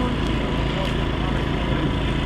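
Steady city street background noise with a constant low hum and faint voices of passers-by.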